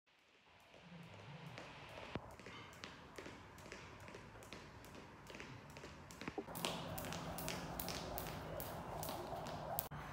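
Jump rope slapping a concrete floor in a steady skipping rhythm, fading in at the start and getting louder about six and a half seconds in, at about three slaps a second.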